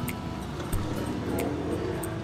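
Steady rumble of street traffic with background music over it.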